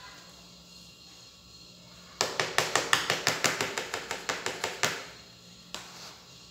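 Quick run of sharp taps, about seven a second for nearly three seconds, as a wooden spoon knocks against a plastic cup to get the last of the raw eggs out into a plastic mixing bowl; one more tap near the end.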